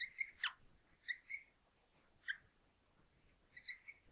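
Felt-tip marker squeaking faintly on a whiteboard in short strokes as a word is written by hand, with one longer falling squeak about half a second in.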